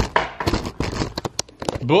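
Handling noise: a quick, irregular run of clicks, knocks and rustles as a handheld camera is moved about.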